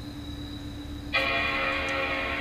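Mac Pro 5,1 startup chime: a single sustained bell-like chord that starts suddenly about a second in and rings on, marking the machine restarting.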